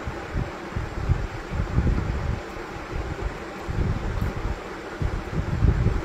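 Gusty low rumble of moving air buffeting a phone microphone over a steady hiss, rising and falling irregularly.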